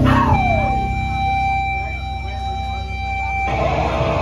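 Amplifier feedback on a live hardcore band's rig: as the band's low chord dies away, a squeal falls steeply in pitch over the first second and settles into a steady high ringing tone. The tone cuts off suddenly about three and a half seconds in, over a steady low hum.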